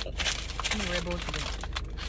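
Brown paper bag crinkling and crackling as it is handled, with a short bit of a voice about a second in.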